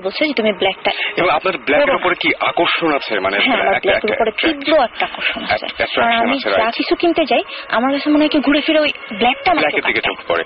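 Speech only: people talking in Bengali on a radio call-in show, in continuous conversation.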